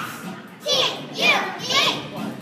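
Group of young children's voices shouting out words together in a large hall, in three loud bursts about half a second apart.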